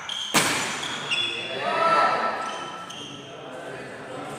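A badminton racket strikes the shuttlecock with one sharp crack about a third of a second in, followed by short high squeaks of players' shoes on the wooden court floor.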